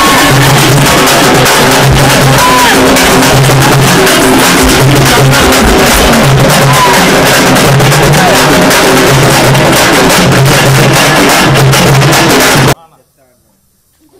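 Loud, drum-heavy music with dense fast strokes over a repeating low note pattern, cutting off suddenly near the end.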